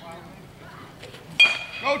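Metal baseball bat striking a pitched ball: one sharp, ringing ping about one and a half seconds in.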